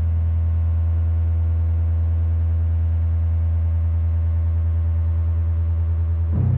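Schecter Omen 5 five-string electric bass holding one low note, sustained at an even level without fading.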